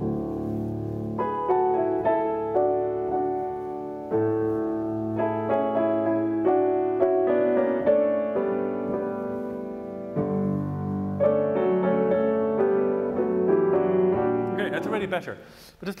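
Grand piano being played: a slow melodic passage of ringing chords and melody notes, with new notes struck every second or so. The playing breaks off near the end as a man starts speaking.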